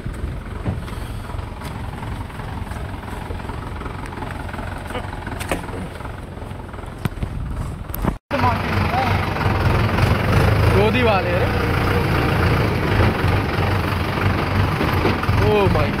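Tractor diesel engine running steadily with a low, even rumble, heard from on the tractor. About eight seconds in the sound cuts out for a moment and comes back louder, with a few short shouts over the engine.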